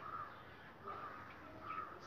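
A bird calling faintly outdoors: three short, arched calls, each under a second apart.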